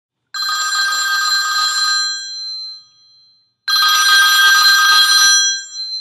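Telephone with a bell-type ring ringing twice, each ring about a second and a half long, with a pause between: an incoming call.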